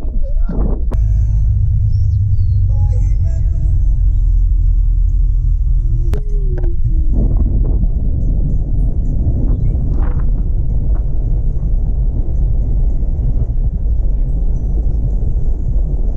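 Loud, steady low rumble of wind and road noise on the microphone of a camera at the side of a moving car on a winding road.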